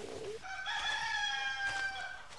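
Rooster crowing: one long cock-a-doodle-doo starting about half a second in, held for about a second and a half and dipping slightly in pitch at the end.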